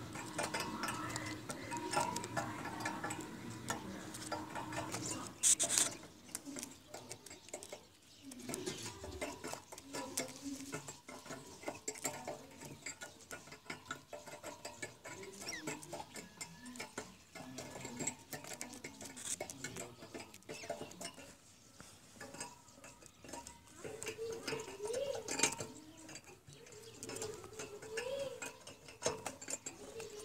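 Irregular light clicks, taps and scratches of a caged francolin stepping and pecking on the wire-mesh floor and bars of its metal cage, with one sharper clatter about five and a half seconds in.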